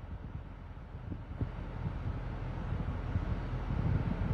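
Low, uneven rumble inside a car cabin, growing slowly louder over the few seconds.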